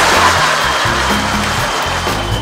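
High-pressure water cannon jets firing, a loud rushing hiss of spray that starts suddenly and eases slightly, over background music with a bass line.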